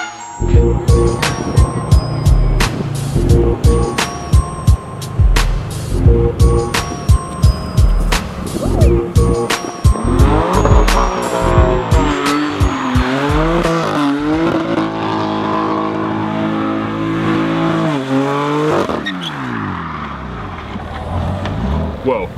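About ten seconds of music with a steady beat, then a BMW F80 M3's twin-turbo straight-six revving up and down repeatedly with tyres squealing as it does donuts. The engine note falls away near the end.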